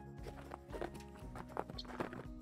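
Faint hoofbeats of a horse trotting on arena sand, soft irregular thuds, under quiet background music.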